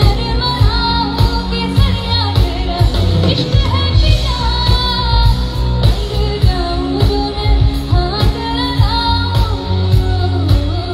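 A woman singing a song live into a microphone, amplified, backed by a band with drums and a strong, steady bass line.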